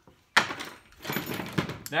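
Metal hand tools clattering on a workbench as a pair of tin snips is picked up. It starts with a sharp knock and rattles on for over a second.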